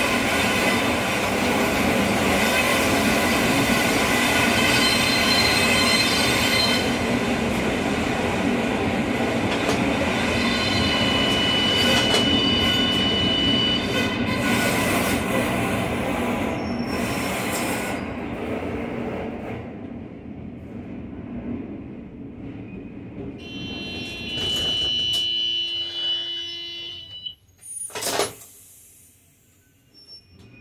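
CAF metro train rolling slowly on its steel wheels on rails, with a loud steady running rumble that fades after about twenty seconds as it slows. High-pitched wheel squeal comes in briefly mid-way and again near the end, followed by a short loud burst of noise and then near quiet as the train comes to a stop.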